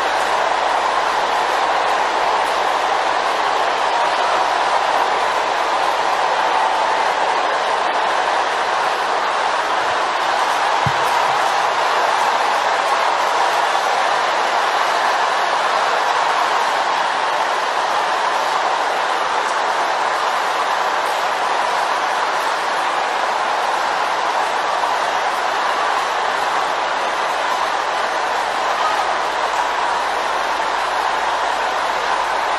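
A large congregation all praying aloud at once, their overlapping voices merging into a steady, loud roar.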